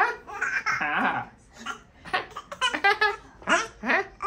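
A baby laughing in repeated short bursts, with a man laughing along.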